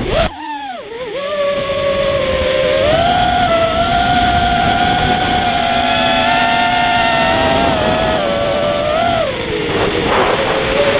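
Brushless motors and propellers of a QAV-210 FPV racing quadcopter (ZMX Fusion 2205 2300 kV motors) whining as heard from the onboard camera, with wind buffeting the microphone. The pitch dips sharply near the start as the throttle is chopped, climbs about three seconds in, holds high through hard flying, and drops away near the end.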